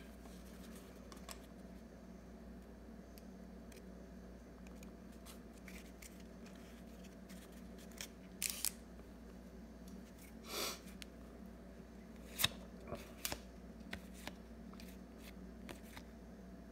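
Cardboard trading cards being shuffled through a stack by hand: a few short snaps and swishes of card sliding over card, mostly in the second half, over a faint steady room hum.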